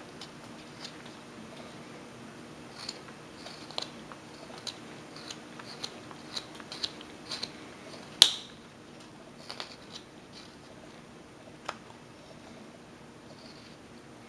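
Small carving knife slicing chips off a wooden figure: a string of faint short snicks and clicks, the loudest a little past halfway, fewer near the end.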